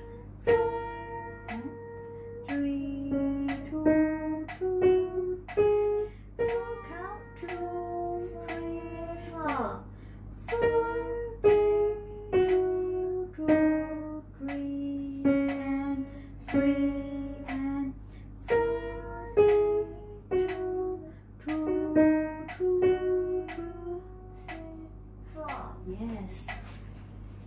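A simple beginner piano melody, mostly one note at a time in an even rhythm, played along with a recorded accompaniment track.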